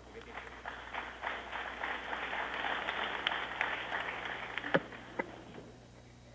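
Audience applauding: a dense patter of many hands clapping that swells up and then dies away near the end.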